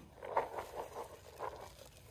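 Cattle feed pellets rattling in a rubber feed pan and pouring out onto grass, a quick run of short rustling patters.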